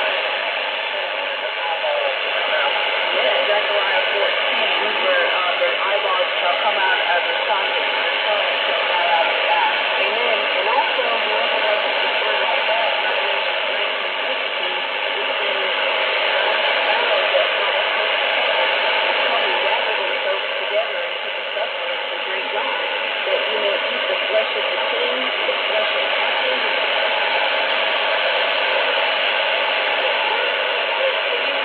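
Shortwave AM broadcast of CFRX Toronto on 6070 kHz through a communications receiver: faint speech buried under steady hiss and static, a weak transatlantic signal. The sound is narrow and muffled, with slow swells and dips in strength.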